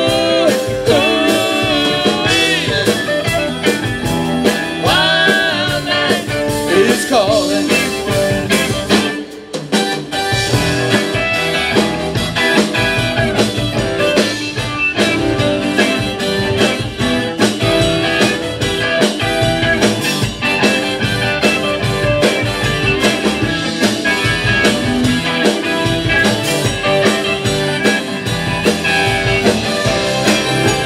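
Live rock band playing an instrumental break with electric guitar, bass, drums and keyboard; a lead line bends its notes in the first few seconds. The band stops briefly about nine seconds in, then comes back in full.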